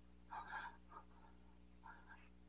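Faint, brief rubbing of fingertips on skin as blush is worked into the cheek, a few soft scuffs about half a second in and again near the end, over a steady low hum.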